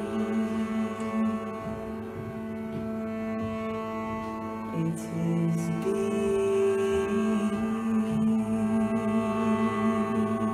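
Live ensemble music: a bowed cello playing long held notes over a steady drone, the notes shifting a few times.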